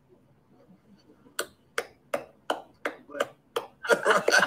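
Steady rhythmic hand claps, about three a second, starting about a second and a half in, just after the harmonica blues stops.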